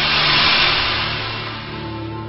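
A whoosh sound effect that swells to a peak about half a second in and fades away, laid over sustained intro music tones.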